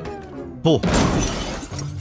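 A sudden crash that dies away over about a second as a skateboard comes down off a high wooden wall shelf.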